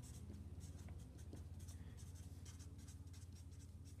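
Felt-tip marker writing capital letters on paper: a run of faint, short scratchy strokes over a low steady hum.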